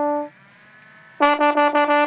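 Trombone playing: a held note cuts off just after the start, a brief pause, then from just over a second in a run of quick repeated notes on a single pitch.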